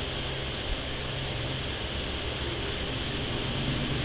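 Steady background hiss with a low, even hum; no distinct event.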